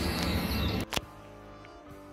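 An aircraft passing overhead, a loud steady rushing noise that cuts off suddenly a little under a second in. After a click, faint music with a steady held chord follows.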